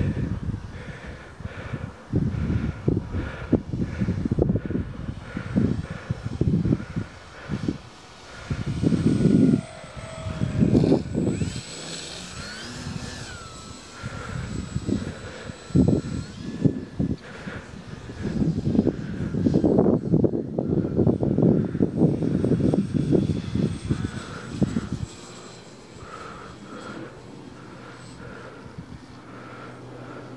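Electric motor and propeller of a Dynam Beaver RC model plane whining overhead, the pitch sliding up and down in the middle as the throttle changes. Gusty wind buffets the microphone and is the loudest sound until it eases near the end.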